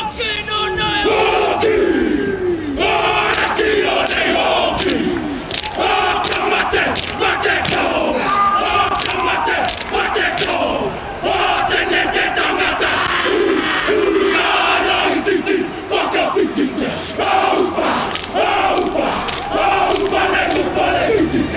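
All Blacks rugby team performing the haka: a group of men chanting and shouting in unison, with sharp slaps breaking in all through, over the noise of a large stadium crowd.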